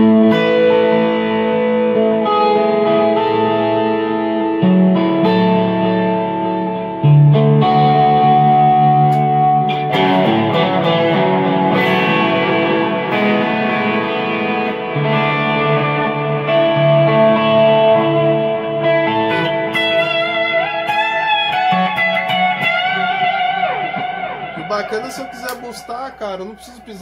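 Electric guitar played through a TC Electronic G-System multi-effects floor unit, with its delay and reverb switched on and its compressor off. It plays sustained chords that change every two to three seconds, with the notes ringing on, and fades out near the end.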